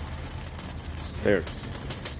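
Low, steady vehicle engine rumble heard from inside a car cabin, with a short spoken word over it about a second in.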